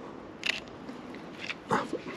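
Leica SL2-S shutter clicking as a photo is taken: one sharp click about half a second in, and a fainter click about a second later.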